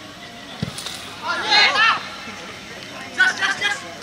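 A football kicked with a single dull thud, followed by two bursts of loud, high-pitched shouting from players or spectators.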